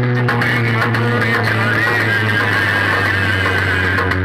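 Loud music blaring from a truck-mounted stack of horn loudspeakers: a steady bass note under a wavering melody line.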